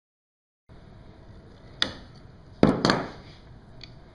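Fret wire being clipped with fret nippers: a click, then two sharp snaps in quick succession a little before three seconds in, and a faint click near the end.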